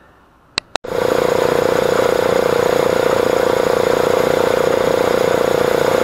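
An air-cooled piston air compressor running steadily and loudly. It starts abruptly about a second in, after two short clicks, with a constant pitch throughout.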